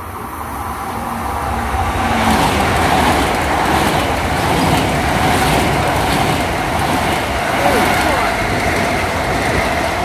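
A Long Island Rail Road M7 electric multiple-unit train passes at speed. The rush and rumble of its wheels on the rails builds over the first couple of seconds and then holds loud, with a steady whine running through it.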